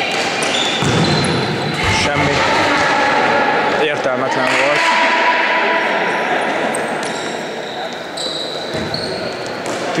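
Futsal ball being kicked and bouncing on a hard sports-hall floor, a few sharp thuds, with short high squeaks of sneakers on the court and players' voices calling, all echoing in the large hall.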